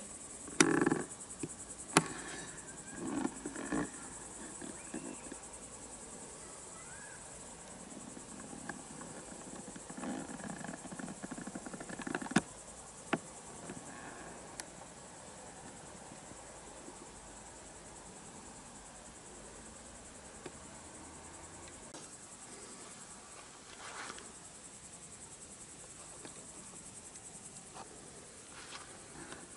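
Crickets chirring as one steady, high-pitched trill, with a few brief knocks and rustles scattered over it, the sharpest a couple of seconds in and again about halfway through.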